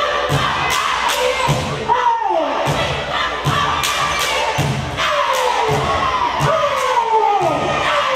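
A cheerleading squad's stomp-and-clap cheer: a steady beat of stomps on the hardwood floor and hand claps, with a group of girls' voices shouting a chant whose calls fall in pitch, over crowd noise in a large gym.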